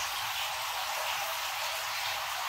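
Steady hiss of running water at a catfish tank.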